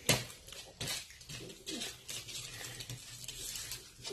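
Fingers clicking and scraping on a plate while picking up chips and nuggets: a sharp click at the start and another just under a second in, followed by soft handling and eating noises.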